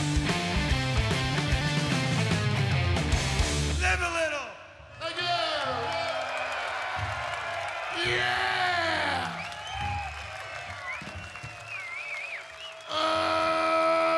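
Stoner rock band playing (electric guitar, bass and drums) until the song stops abruptly about four seconds in. A festival crowd follows, cheering, whooping and yelling. Near the end a loud held tone slides downward.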